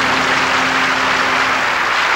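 Studio audience applauding, a dense steady clapping, with a low held musical note underneath that fades out near the end.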